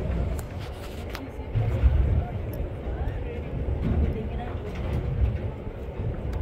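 Gusty low rumble of wind buffeting the microphone out on open sea, swelling and easing several times, with faint voices of people talking in the background.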